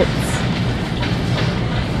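Steady rumbling background noise in a supermarket aisle: store ambience mixed with handling rumble from the moving handheld camera.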